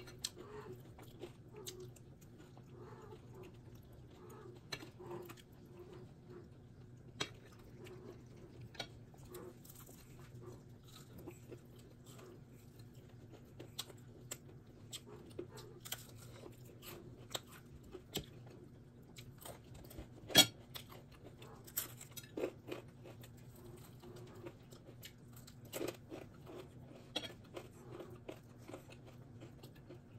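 Close-up chewing and crunching of crispy fried chicken, with scattered small clicks and crackles over a faint steady low hum. The loudest sound is a single sharp click about two-thirds of the way in.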